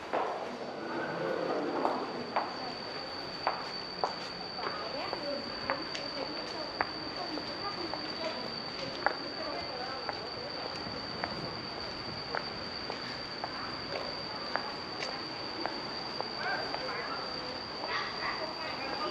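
Footsteps walking on paved ground, hard shoe soles clicking about once a second, against a steady high-pitched whine and a background murmur.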